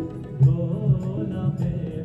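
Live band music from a Bengali song performance, with a melody over a steady beat of a little over two strokes a second.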